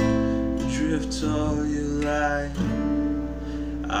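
Steel-string acoustic guitar strumming a slow chord progression in A minor, a new chord ringing out every second or so.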